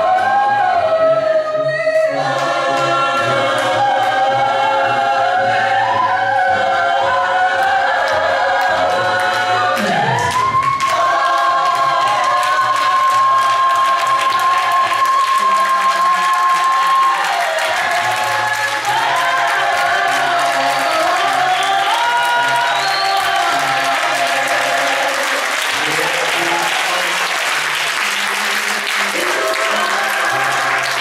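A cappella gospel choir of mixed voices singing without instruments. Just under halfway through, one voice slides up into a long held high note for several seconds. Near the end, clapping swells up under the singing.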